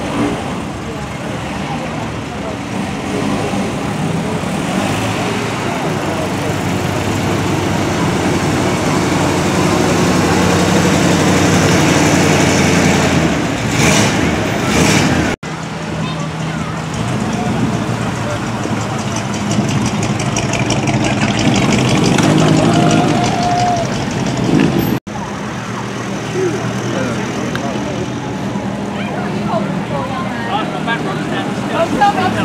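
Classic cars driving slowly past one after another, their engines running at low speed and swelling as each one comes near.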